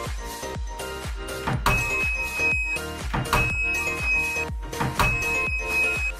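Background music with a steady beat. Over it a high-pitched steady beep sounds three times, each about a second long, from a small round piezo buzzer powered by a 9-volt battery, the homemade door alarm going off.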